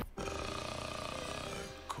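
A male rapper's deep voice drawing out one long 'uhh' in a rap track, breaking off shortly before the next line starts.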